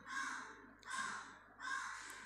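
A bird calling three times, short harsh calls spaced under a second apart.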